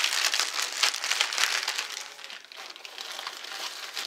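Clear plastic zip-top bag crinkling as it is handled, louder in the first two seconds and fainter after.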